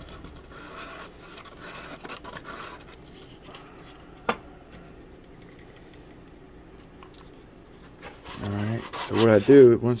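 Faint rubbing and scratching from hands and a super-glue bottle's nozzle working along a balsa-wood model hull, with a single sharp click about four seconds in. A man's voice starts talking loudly near the end.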